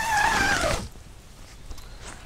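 ALPS Mountaineering Lynx tent's rain-fly door zipper pulled shut in one quick stroke, a short zipping rasp lasting under a second.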